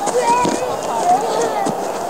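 High-pitched children's voices calling out during play, with a couple of soft thuds.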